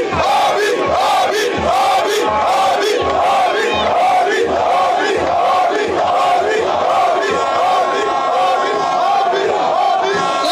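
Large stadium crowd shouting a rhythmic chant, about two syllables a second, over regular low thumps. A steady held tone joins about seven seconds in.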